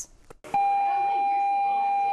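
A school's electronic class-change bell sounding from a wall-mounted PA speaker: one steady, unwavering tone that starts about half a second in and holds.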